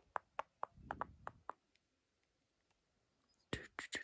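Faint, quick clicks and ticks from fingers handling a plastic Blu-ray case in its shrink-wrap, several in the first second and a half, then a pause and a few more near the end.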